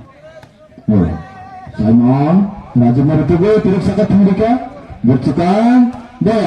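A man's loud voice calling out in long, drawn-out phrases, from about a second in, over a murmuring outdoor crowd.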